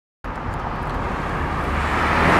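Steady road traffic noise from a multi-lane city street, slowly growing louder as a car approaches.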